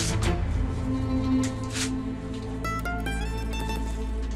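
Background score of sustained low tones with plucked string notes climbing in steps in the second half. Brief rustles of a sheet of paper being handled come near the start and about halfway through.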